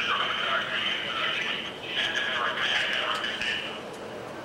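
Distant, echoing speech over a stadium public-address system, thin and narrow in tone, with a short pause midway.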